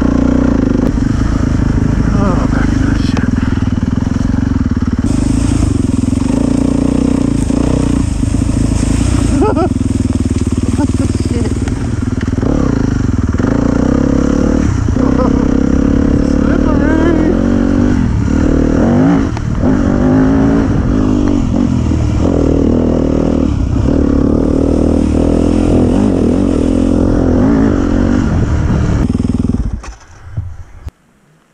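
Dirt bike engine running under way on a trail, its pitch rising and falling with the throttle; the sound stops abruptly near the end.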